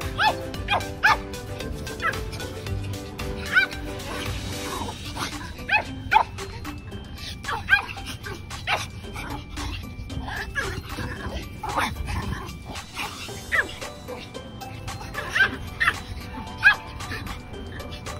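A small Pomeranian barking in play, with repeated short, high yaps, often two or three in quick succession, over background music.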